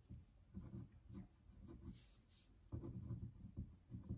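Near silence with a few faint, short rustling and handling noises.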